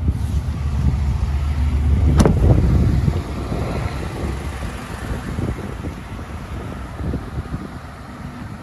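Low wind rumble on the microphone, heaviest for the first three seconds and fading after. About two seconds in comes a single sharp slam of the pickup's door being shut.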